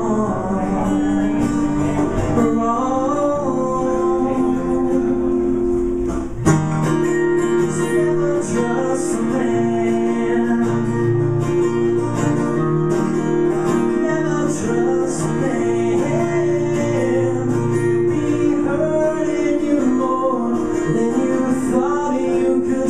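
Two guitars playing a song live, a strummed rhythm part under a moving melodic line, picked up by a camcorder's built-in microphone. A sharp accent comes about six seconds in.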